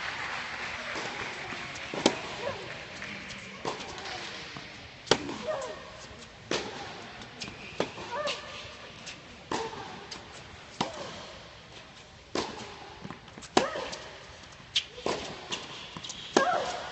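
Tennis rally on an indoor hard court: sharp pops of racket strings striking the ball, with ball bounces in between, coming about every second to second and a half and echoing in the large hall. Faint voices sound in the background.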